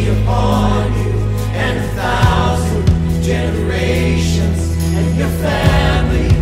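Contemporary worship song sung by a group of men's and women's voices together, over instrumental backing with a held bass line that changes note about two seconds in and again near the end.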